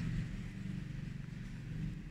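A steady low background hum with no distinct event, from a source that cannot be told apart.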